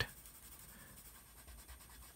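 Faint strokes of a purple Prismacolor colored pencil on paper, laying down and blending a dark edge of color.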